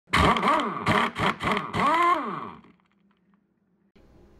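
Short voice-like channel intro sting: several swooping sounds that rise and fall in pitch, lasting about two and a half seconds and fading out.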